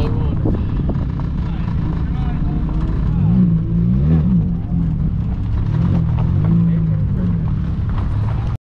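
Car engine running at low revs as the car rolls slowly on gravel, its note rising and falling briefly about three to four seconds in and again near the end.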